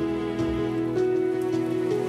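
Soft background instrumental music with sustained notes that change pitch slowly.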